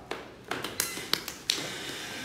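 A quick, irregular run of sharp taps and knocks, about seven in a second and a half, then quieter.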